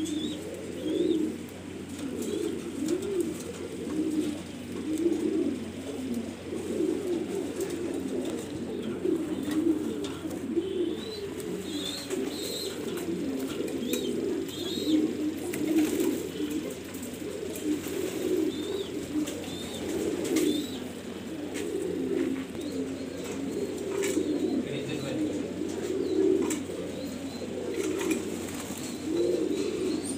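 Many domestic fancy pigeons cooing at once in a loft, a dense, continuous chorus of overlapping low coos.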